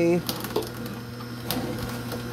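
Nama J2 slow vertical juicer running, its motor giving a steady low hum while the auger crushes produce with a few sharp cracks and snaps.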